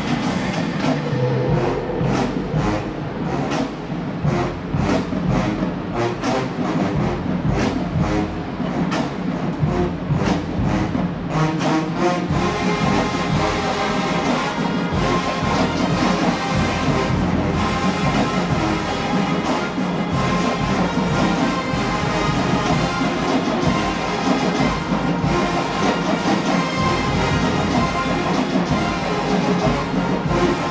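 HBCU show-style marching band playing, brass and drums together. The first part is driven by sharp, regular drum hits, and about twelve seconds in the full brass section comes in with a denser, sustained sound.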